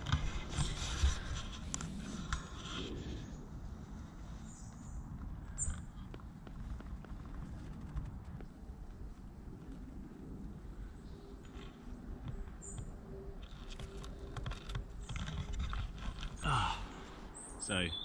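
Rustling and knocking of handling noise, dense in the first few seconds, then sparser over a steady low outdoor rumble.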